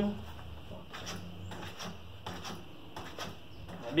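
GTK Chronic coil-spring suspension fork being pushed down and released by hand, giving a few faint knocks and sliding sounds as it compresses and rebounds, with the rebound damping set to minimum. It moves very softly.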